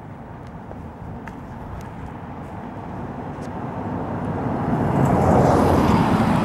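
A motor vehicle approaching, its noise growing steadily louder over about five seconds.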